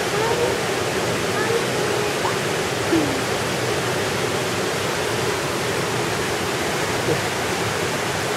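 A steady rush of running water, with faint voices in the background.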